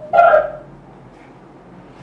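A brief high-pitched cry or yelp, about half a second long, near the start, coming through a call participant's unmuted microphone; then only faint background hum.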